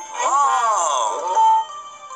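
A drawn-out wordless vocal sound, a cartoon-style voice that glides up and then down in pitch, ending on a short held note, over faint background music.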